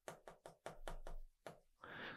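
Faint quick taps and scratches of a pen on an electronic whiteboard's surface while writing, about six light ticks a second.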